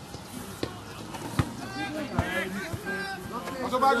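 Players' and spectators' shouts across a football pitch, louder near the end, with three sharp thuds about a second apart from the first half: a football being kicked.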